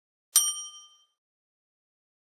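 Notification-bell sound effect from a subscribe-button animation as the bell icon is clicked: one bright ding that rings out and fades within about a second.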